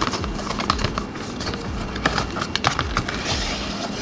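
A cardboard product box being handled and opened and a plastic pump bottle drawn out of it: a run of irregular light clicks and taps, with a short scraping rustle about three seconds in.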